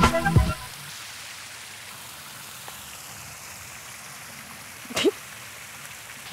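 A steady, even hiss of outdoor background noise after a music cue and laughter cut off in the first half-second, with one short voice sound about five seconds in.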